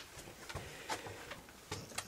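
Faint steady hiss with a few soft clicks and knocks, the clearest about a second in and near the end.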